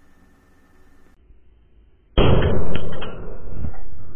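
The output capacitor of a DC-DC buck converter module bursting with a sudden loud bang about two seconds in, followed by about two seconds of loud noise. It gave out from over-voltage, with the output held above 30 volts.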